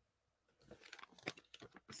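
Faint scratching and rustling with a few light clicks, starting about half a second in: a name being written down by hand.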